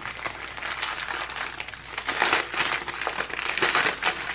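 Clear plastic zip-lock bag full of small packets of diamond-painting drills crinkling as hands unfold and flatten it, in irregular rustles that are loudest about halfway through and near the end.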